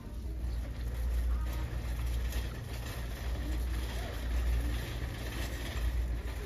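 Crowded shop's background sound: a steady low rumble with faint, indistinct voices of other shoppers.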